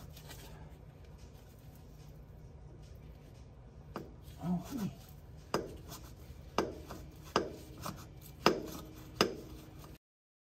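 Sharp clicks and knocks as the compact tractor's spin-on hydraulic filter is worked loose with a filter wrench, coming about once a second from a few seconds in, after a stretch of quiet.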